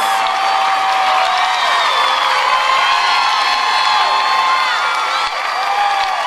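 Studio audience cheering, screaming and whooping over applause, a steady loud crowd roar.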